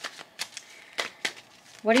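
About half a dozen sharp, irregular clicks and snaps of tarot cards being handled and shuffled.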